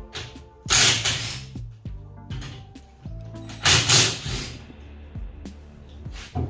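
Background music with a steady beat, broken twice by a loud burst of about half a second to a second from a cordless power tool, likely an impact wrench, run at the rear wheel's lug nuts.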